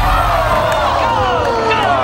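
Studio audience groaning together in one long, falling 'aww' of disappointment: the contestant's throw has missed the dunk-tank target.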